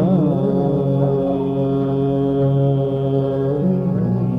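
Hindustani classical vocal in raag Kaushik Dhwani: a male voice wavers through a short ornament, then holds one long steady note until shortly before the end, when a new phrase begins. A steady tanpura drone sounds underneath, with no tabla.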